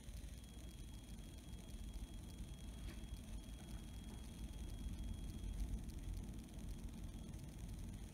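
Quiet room tone: a low steady rumble with a faint thin high tone, and no clippers running.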